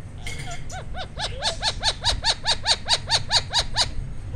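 Indian ringneck parakeet giving a rapid run of short, identical calls, about six a second, growing louder as it goes.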